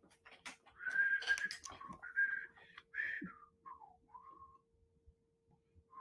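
A person whistling a few short notes, some held level and the last ones sliding down in pitch, with a faint steady hum underneath.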